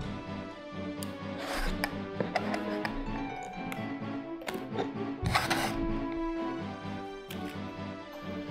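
Background music with a steady beat, over scissors snipping and cutting through cardboard-and-plastic toy packaging. The cutting comes as a few sharp clicks and two rustling bursts, one about one and a half seconds in and a louder one a little after five seconds.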